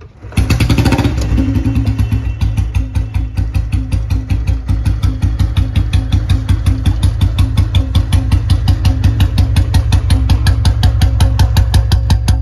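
A restored 2002 Royal Enfield Bullet Standard's single-cylinder engine starts about half a second in. It is blipped briefly, then settles into a steady idle with an even thump of about seven beats a second through the chrome silencer.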